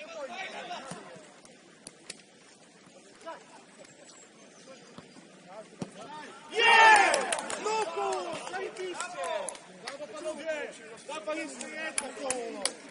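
Players shouting to each other across an open football pitch. The loudest call comes about halfway through and is followed by more scattered calls. A few sharp knocks are heard as well.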